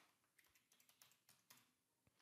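Computer keyboard typing, heard faintly: a quick run of keystrokes as a word is typed.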